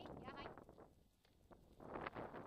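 A harnessed sled dog whining in a few short high-pitched cries near the start, impatient to start pulling. Near the end, wind and rolling noise rise as the scooter gets moving.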